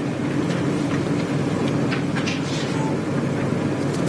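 Steady background noise of a room, with faint, indistinct voices in it.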